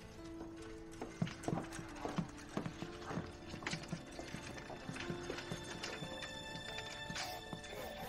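Suspense film score: held low tones under irregular percussive clicks and taps, busiest in the first half.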